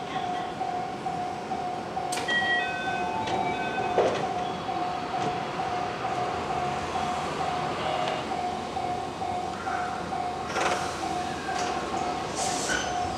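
JR West 221 series electric train standing at the platform before departure. A steady pulsing electronic beep runs throughout, with a short run of higher chime notes about two seconds in. The doors slide shut with a knock about four seconds in, and bursts of air hiss come near the end.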